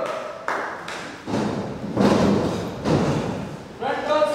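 Heavy thuds on a wrestling ring's mat as trainees land on it: four in a row, a little under a second apart, each ringing briefly through the ring. A voice calls out near the end.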